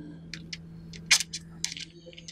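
A handful of small, sharp clicks and ticks, about seven in two seconds, over a steady low hum.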